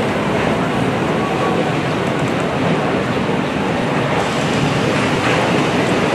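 Water rushing through the sluice gates of the Manggarai floodgate, a loud, steady, unbroken noise.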